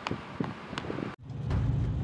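A few light taps, then, after an abrupt cut about a second in, the steady low rumble of a moving car with wind noise, heard from inside the vehicle.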